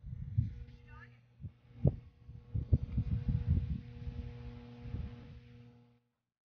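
Irregular low thumps and rumble on the microphone, heaviest near the middle, over a steady electrical hum. A brief, distant voice comes about a second in.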